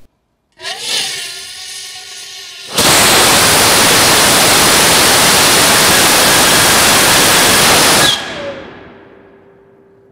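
Nitrous oxide hybrid rocket motor firing on a static test stand. It starts with a hiss carrying whistling tones, then runs as a loud, steady rushing noise for about five seconds before cutting off and tailing away. This was an erratic burn without proper combustion, the nitrous flow cut to about a fifth by two-phase flow at the valve.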